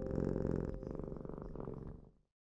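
A cat purring, a rapid, even pulsing that slowly grows quieter and dies away at the end.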